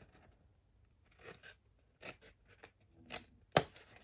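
Scissors snipping through folded paper in several short, faint cuts, with a sharp click near the end.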